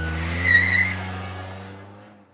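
Car sound effect: a steady engine note with a tyre screech about half a second in, the loudest moment, then fading away over the last second.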